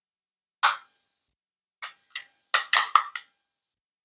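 A spoon clinking against a small glass bowl as cheesy potatoes are scooped into it: a single clink, two more, then a quick run of four or five clinks.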